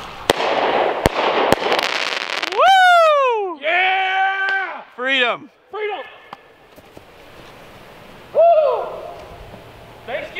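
Consumer firework going off, hissing and crackling with a few sharp pops over the first couple of seconds. Then loud, high-pitched yelling and whooping, one long falling yell and a held shout, with another shout near the end.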